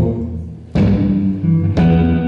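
Solo live guitar playing sustained chords, with a deep drum hit landing about once a second on each struck chord.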